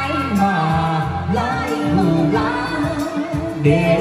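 A woman and a man singing a Vietnamese vọng cổ duet live through handheld microphones, over amplified backing music.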